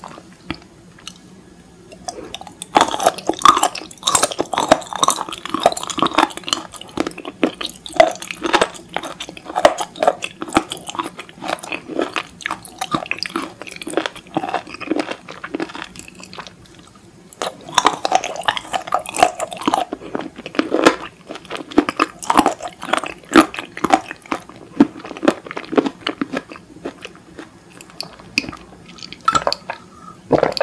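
Close-miked chewing of slices of raw abalone, with crisp, crunchy bites. It comes in two spells: from about two and a half seconds in, and again after a short pause past the middle.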